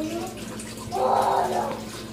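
Liquid poured from a pot into a strainer over a kitchen sink, splashing steadily.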